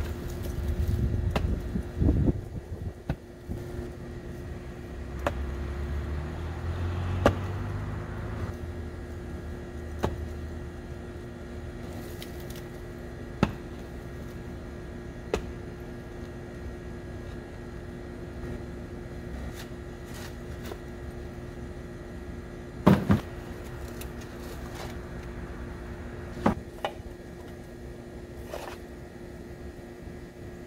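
Digging in hard clay soil with a mattock and shovel: scattered thuds and scrapes of the blade, the loudest a pair of strikes about two-thirds of the way through, over a steady background hum.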